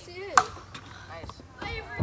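A single sharp crack of a bat hitting a pitched wiffle ball, with a brief ring after it, among a few voices.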